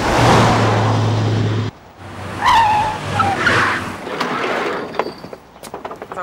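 Passenger van driving fast with a steady engine drone that cuts off abruptly, then its tyres squealing for about a second and a half as it brakes hard to a stop. A few sharp clicks follow near the end.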